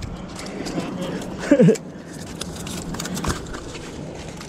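Spinning reel and rod handled as a hooked fish is reeled up: scattered light clicks and handling noise. A short rising-and-falling vocal exclamation comes about a second and a half in.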